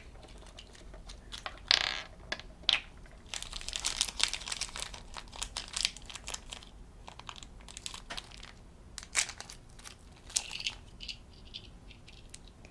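A small hollow plastic toy capsule being twisted and pried open by hand, with a few sharp plastic clicks and stretches of crinkling plastic as the charm is taken out.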